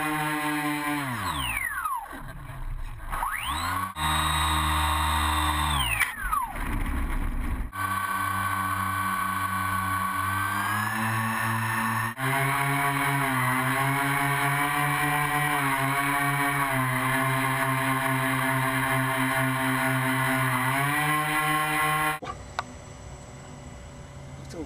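RC plane motor and propeller heard from a camera on board: a steady whine that falls in pitch twice in the first six seconds as the throttle comes back, then holds with small rises and dips. The sound jumps abruptly several times where clips are joined, and gives way to a much quieter sound about two seconds before the end.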